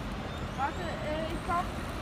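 Mercedes-Benz Citaro city bus engine running with a low, steady rumble as the bus pulls away from the stop. Brief voices of people nearby sound over it.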